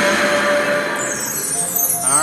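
Dancing Drums slot machine playing its game music and sound effects, a steady tone over a busy chiming bed, with a high falling sweep in the second half.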